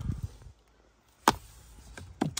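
Hand handling the plastic case of a car's tire repair kit: a low rustle at the start, then one sharp knock a little over a second in.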